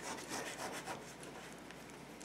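Faint rubbing and scraping as the tip of a liquid glue bottle is drawn across paper, spreading glue over an envelope. It grows quieter after about a second.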